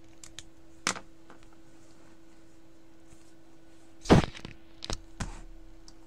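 Small clicks and knocks of things being handled on a drawing desk: a few sharp clicks in the first second, then a louder thunk about four seconds in followed by two lighter knocks. A faint steady hum runs underneath.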